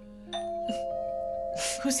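Two-tone doorbell chime ringing: the first note sounds about a third of a second in, a second note follows shortly after, and both ring on and fade slowly.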